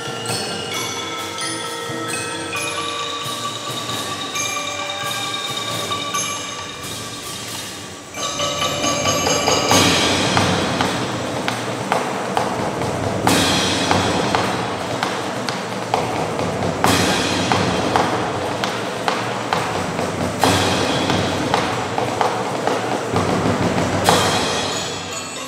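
Youth percussion ensemble playing: marimbas and xylophones ring out a melody of sustained mallet notes, then about eight seconds in the drums and cymbals come in loudly, with cymbal crashes every three to four seconds over the drumming.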